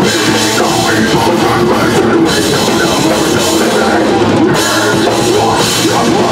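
Live heavy metal band playing loud: distorted electric guitars over a pounding drum kit, steady and without a break.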